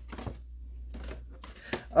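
Soft handling noises of a clear plastic blister tray and a paper instruction sheet: a few light clicks and crinkles.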